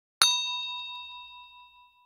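A single bell-like ding sound effect, struck once just after the start and ringing away over nearly two seconds.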